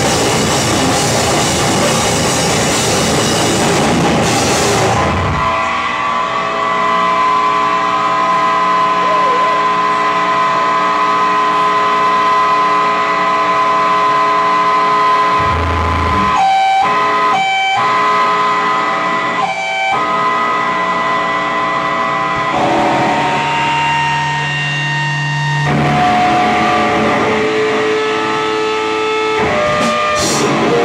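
Heavy rock band playing live and loud. Drums and distorted guitars play together for about five seconds, then the drums stop and long held guitar and bass notes ring on, with a few brief breaks. A deep held bass note comes in past the middle.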